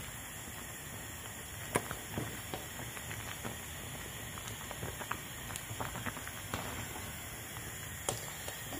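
Thick, slimy okro soup being stirred and lifted with a metal ladle in a stainless steel pot: scattered light clicks and wet sounds over a steady hiss.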